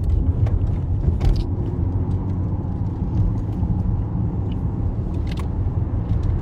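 Low, steady rumble of a car heard from inside its cabin, with a few faint clicks.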